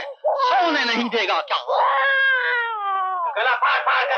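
A newborn baby crying: a run of high, wailing cries, with one longer falling cry in the middle.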